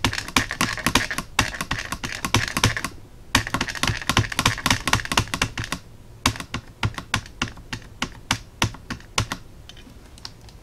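A stamp pad tapped again and again against a clear stamp to ink it: a fast patter of light taps. There is a short break about three seconds in, and the taps become slower and more spaced after about six seconds.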